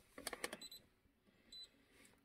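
A few light clicks and taps from handling a handheld scan tool tablet in the first half-second, then two short high electronic blips, the second about a second and a half in; otherwise near silence.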